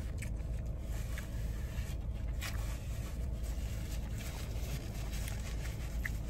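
A person chewing a mouthful of taco, with a few faint mouth clicks, over a steady low background hum.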